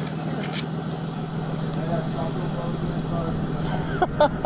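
Steady low hum of an idling vehicle engine, with faint distant voices and two brief clicks, one about half a second in and one near the end.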